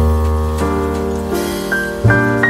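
Background piano music: a low chord struck at the start, then further notes about every half second, each ringing and fading.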